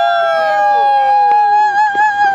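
Two women's voices holding one long, loud, high note together. One stays level and wavers slightly near the end, while the other slides slowly down in pitch.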